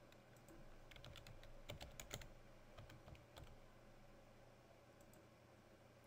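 Faint keystrokes on a computer keyboard, coming in a few scattered clusters of taps as a password is typed.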